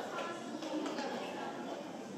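Indistinct chatter of many people talking at once, with no single clear voice.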